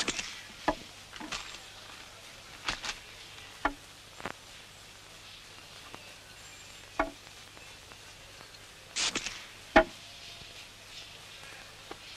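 Glass cola bottles handled and set down on a desk: scattered light clinks and knocks, with a brief hiss and a sharp click about nine to ten seconds in.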